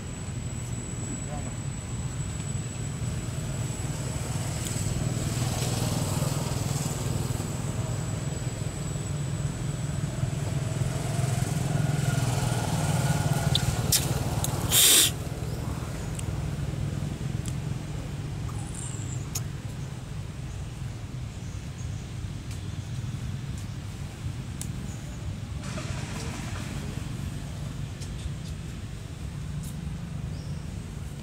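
Outdoor background: a steady low rumble with faint distant voices. About halfway through, a couple of clicks and then a brief, loud burst of noise.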